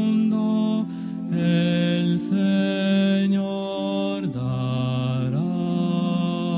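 Slow sung hymn: voices holding long notes that move in steps from one pitch to the next, dropping to a lower held note about four seconds in before sliding back up.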